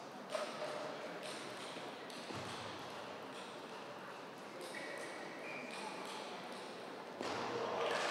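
Table tennis rally: the ball clicks lightly off bats and table about once a second over faint hall ambience. The hall noise swells near the end as the point finishes.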